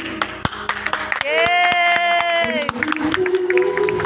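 Scattered hand clapping over music, with one long high note held for about a second and a half near the middle.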